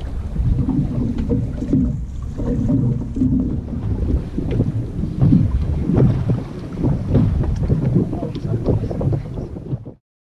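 Wind buffeting the microphone on an open boat, a gusty low rumble that rises and falls, then cuts off suddenly near the end.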